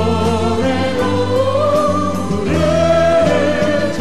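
A teenage choir singing a Korean gospel praise song with instrumental accompaniment. The melody climbs about halfway through and then holds a long note.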